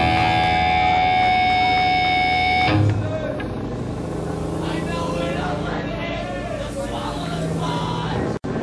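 Amplified electric guitar holding a steady, ringing multi-tone drone, which cuts off suddenly about two and a half seconds in with a low thud. Voices then talk over the room noise of a live gig between songs.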